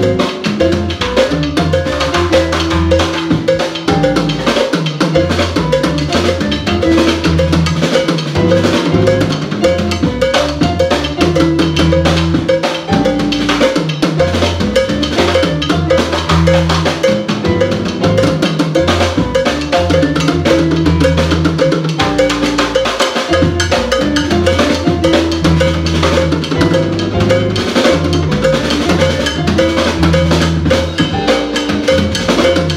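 Latin jazz band playing instrumental music live: electric bass, keyboard, drum kit and hand percussion keep a steady, busy groove under a moving bass line.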